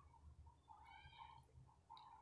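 Near silence, with one faint, short pitched call lasting under a second around the middle.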